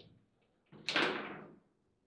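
A foosball ball struck hard on a table football table: a faint click at the start, then about a second in one loud slam of the ball against the table that dies away over half a second.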